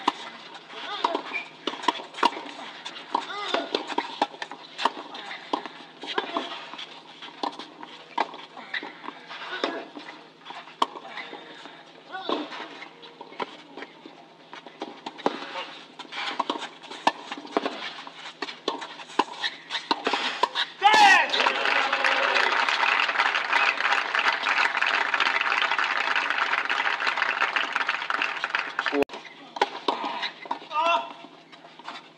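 Tennis ball struck back and forth in a rally, sharp hits about a second apart, with voices in the background. About 21 seconds in the point ends and spectators applaud for about eight seconds, the loudest part.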